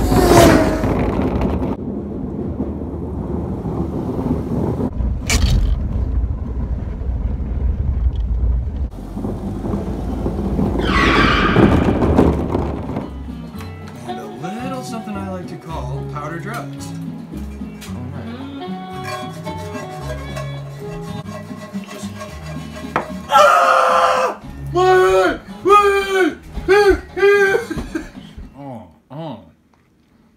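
Car engine running at the tailpipe, with a dense low rumble that rises in pitch as it revs near the middle. After that, music takes over, with a loud pitched voice near the end.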